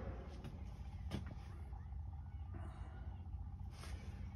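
Faint, steady low hum in the room, with one faint click about a second in.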